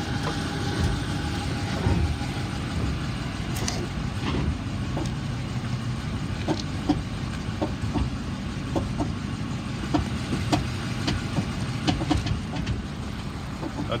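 A 5.7-litre V8 police Dodge Charger running, with a series of irregular clacks from the front end as the car rolls and brakes. The owner suspects a steering knuckle or wheel bearing.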